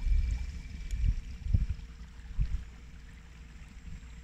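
Water gurgling and lapping against the hull of an inflatable boat under way, with a few irregular low thumps and a faint steady hum from the Minn Kota trolling motor.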